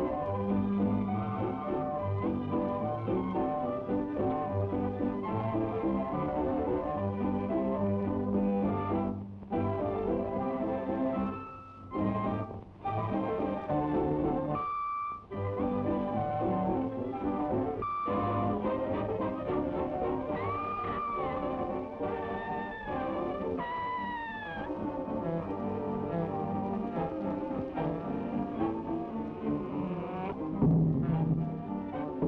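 Orchestral cartoon score led by brass, breaking off briefly a few times, with a few short swooping high notes in the second half.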